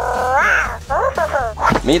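Toy tiger cub, a FurReal Walkalots plush, giving an electronic meow that rises in pitch, followed by a few shorter mewing calls.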